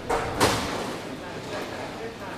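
Voices in the background, with two short, sharp noisy bursts about a third of a second apart near the start.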